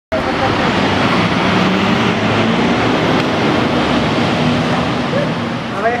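Fire engine's diesel engine running loud and steady as the appliance pulls out of the bay on a call-out. It eases off near the end, where a laugh comes in.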